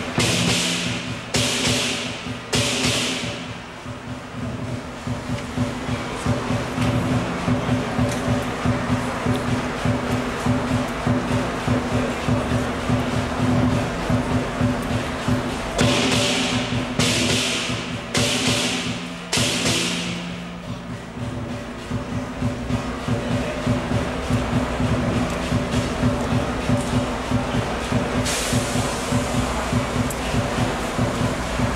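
Lion dance percussion: the big drum beating a fast, steady rhythm with clashing cymbals and gong, which swells into bursts of loud cymbal crashes just after the start and again about sixteen to twenty seconds in.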